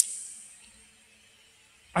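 A single sharp click right at the start, then a faint steady low hum with a second, higher tone held under it.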